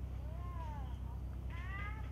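Two short animal calls: the first rises and falls, the second rises near the end. A steady low rumble runs underneath.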